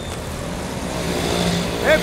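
Small motorcycle engine running as it approaches along a street, its low hum growing a little louder in the second half, over street noise.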